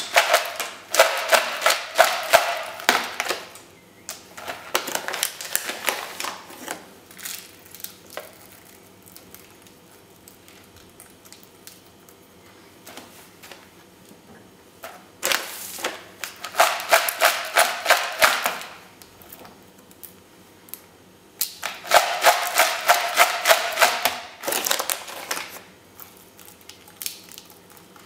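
Crushed ice and rock salt clattering and crunching as bare hands stir them in a plastic tub, in several bouts of dense clicking with quiet pauses between. The salt is being worked into the ice to lower its freezing point.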